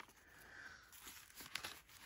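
Faint rustling of the paper and lace pages of a handmade journal as they are handled and turned, with a few soft clicks.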